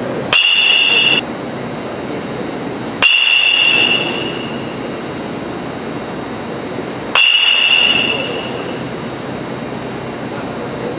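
Metal baseball bat hitting a ball three times, a few seconds apart, each hit a sharp ping that rings on for about a second. A steady background noise runs underneath.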